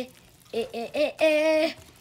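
A child's voice repeating the short vowel sound 'ih', four times, the last one drawn out. Under it is the faint sound of a whisk stirring batter in a glass bowl.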